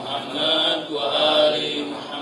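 A man intoning Arabic praises of God and the Prophet in a slow, melodic chant, the traditional opening of a Friday sermon (khutbah), drawing his syllables out on long held notes.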